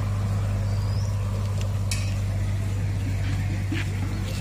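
Steady low hum throughout, with a faint short bird chirp about a second in.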